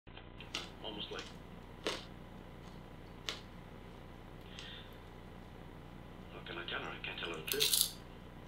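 Someone eating popcorn: a few separate sharp crunches, then a denser run of crunching and rustling that builds to its loudest near the end.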